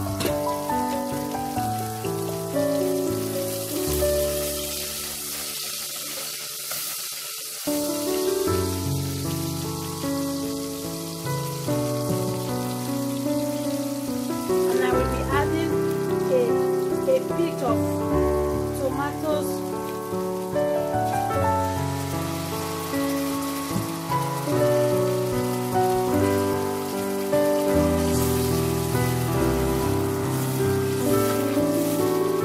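Instrumental background music with held notes that change in steps, over a steady sizzle of chopped onions frying in oil in a pot.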